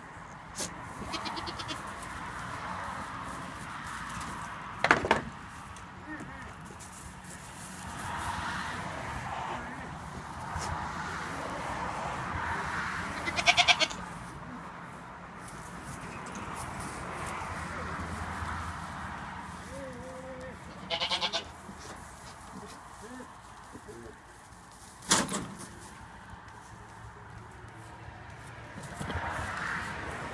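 Goats bleating a few times in short high calls, the loudest about halfway through, with two sharp knocks, one about five seconds in and one near the end.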